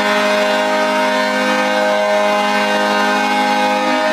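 Sound effect of a horn sounding one long, steady chord of several notes, loud and held without any change in pitch, cutting off at the end. It is played as a salute to a first-time caller.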